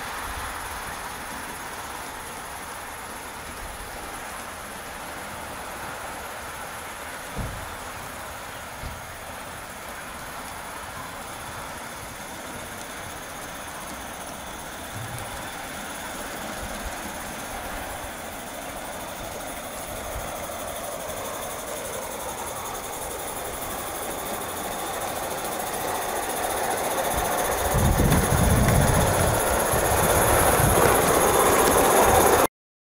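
A live-steam model steam locomotive running with a train of cars on a garden railway track. There are a couple of brief low knocks, and the running sound grows louder toward the end as the train comes close.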